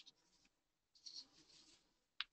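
Near silence: room tone, with a faint, brief rustle about a second in.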